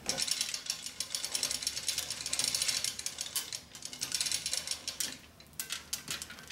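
Manual chain hoist being worked by hand, lifting the heavy cast-iron outboard support: the chain runs through the hoist with a fast, steady rattle of ratchet-like clicks. The clicking eases off about five seconds in, leaving a few scattered clicks.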